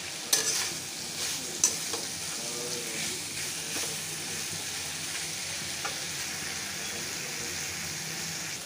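Onion, potato and spice masala sizzling steadily in oil in a metal kadhai, stirred with a flat metal spatula that scrapes sharply against the pan a couple of times in the first two seconds. The masala is being fried until it turns fragrant and the oil separates.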